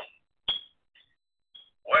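A sharp click with a short high beep right after it, then two fainter short beeps, heard over a narrow, telephone-quality line.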